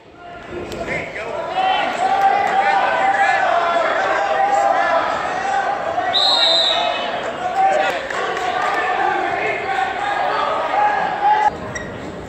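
Several spectators shouting over one another at a wrestling match in a large gym hall. About six seconds in there is a short, shrill referee's whistle blast, the signal that stops the action.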